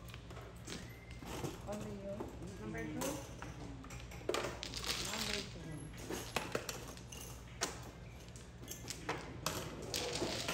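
Mahjong tiles clacking and clattering against one another as they are shuffled face-down by hand across the table. The clatter is densest in the middle, with sharp single clicks throughout.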